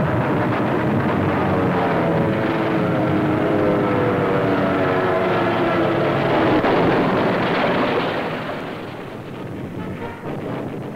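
Aircraft engine sound of a falling warplane: a loud, steady drone with a shifting whine that eases off about eight seconds in.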